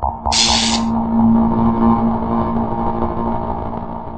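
Electronic synthesizer music: a short hiss-like noise swell about a third of a second in, then a sustained synth chord over a steady low drone, with no beat, slowly fading.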